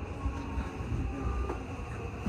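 Odakyu 1000 series electric train rolling at low speed, heard from inside the driver's cab: a steady low rumble of wheels on rail with a faint whine over it.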